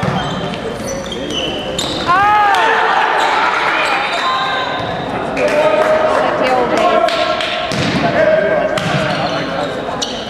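Volleyball play in a gymnasium: the ball knocking off hands and the floor, sneakers squeaking on the hardwood, and players' voices, all echoing in the hall.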